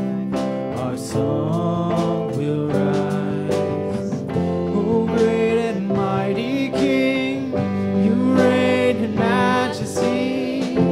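Live worship band music: voices singing a song over guitar and keyboard.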